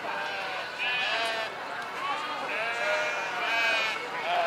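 Sheep bleating: two long, high calls, the second longer, over people talking.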